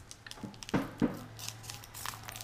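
A foil trading-card booster pack being torn open and crinkled by hand: short, uneven crackling and ripping sounds.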